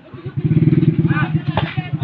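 A small engine running close by, coming in loudly about a third of a second in with a rapid, even pulse. Voices call out over it.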